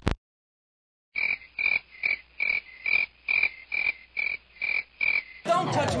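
A regular series of about ten short, identical pulsing calls, a little over two a second, each with a bright high note. They start about a second in after a moment of dead silence and stop shortly before the end.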